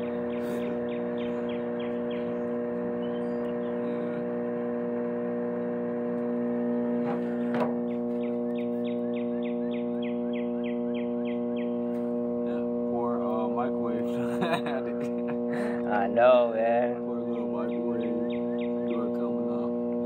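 Microwave oven running: a steady electrical hum from its transformer and magnetron. A soft, rapid ticking comes and goes over it.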